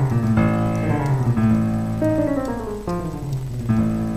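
Yamaha digital piano playing sustained jazz chords, with a chromatic run of notes descending to an A in the second half.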